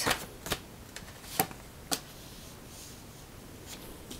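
Oracle cards being handled, with a card drawn from the deck and laid down on the table: four short, sharp clicks of card stock spread over the first two seconds.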